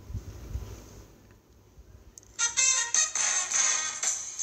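Faint low rumbling, then about two and a half seconds in music starts playing from a Samsung Galaxy S6 smartphone's loudspeaker as a video begins.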